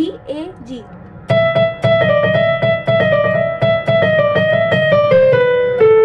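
Casio CT-X5000 keyboard in a piano voice playing a melody passage, starting about a second in: quick repeated notes over a low accompaniment, the melody stepping down twice near the end.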